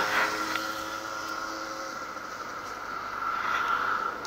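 Road traffic passing close by. One vehicle's engine fades away over the first couple of seconds, and another grows louder near the end, over a steady high tone.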